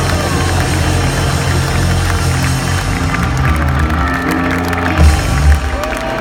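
Amplified rock band's sustained closing chords ringing out, with a crowd cheering and clapping. Two heavy low thuds near the end.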